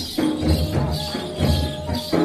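Dandari folk dance music: drums keep a steady beat about twice a second, with jingling percussion over it.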